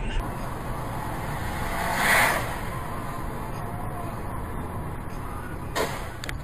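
Car driving, recorded by a dashcam: steady engine and tyre rumble, with a short hissing burst about two seconds in and a sharp knock near the end.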